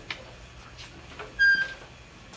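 Handwheel of a beam-loading testing machine being cranked: faint clicks about twice a second, with a short high squeak about one and a half seconds in as load is applied to the timber beam.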